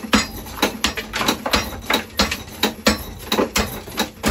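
A homemade treadle hammer, its head driven by a foot pedal and pulled back by a bungee cord, strikes a brick on its post again and again, about four sharp blows a second, crushing the brick to crumbs.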